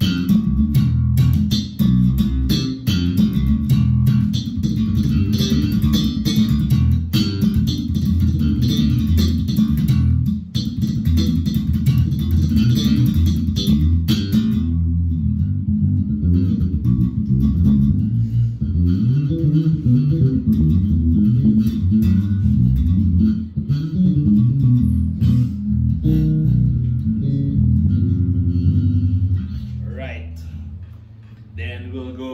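Fender Japan Modern series Jazz Bass played solo: a busy bass line with sharp, clicky attacks for about the first fifteen seconds, then softer, rounder notes.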